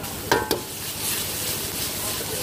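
A steel ladle strikes an iron wok twice in quick succession, ringing briefly. Then a hissing sizzle builds as the ladle stirs frying garlic in the hot wok and steam rises.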